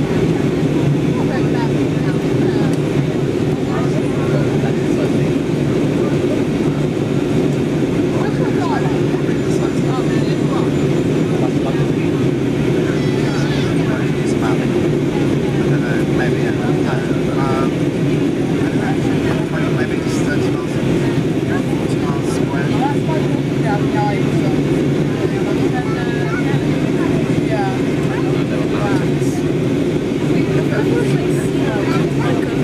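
Steady cabin roar of an easyJet Airbus A320-family airliner in descent, engine and airflow noise heard inside the cabin by the window, with faint passenger chatter beneath it.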